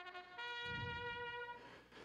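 Trumpet played back faintly: a brief lower note, then a higher note held steady for about a second.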